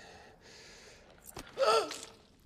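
A wounded man's short, pained gasping cry about one and a half seconds in, after a faint hiss and a small click.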